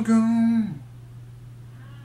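A man's voice holding a long, drawn-out "yeah" on a steady note that steps up once in pitch and cuts off under a second in, followed by a faint steady low hum.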